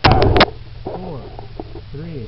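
A camera microphone being jostled and handled: a loud rumbling clatter for about half a second, then a steady low hum with scattered voices in the background.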